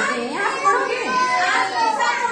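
Several young children's voices chattering and calling out over one another in a classroom.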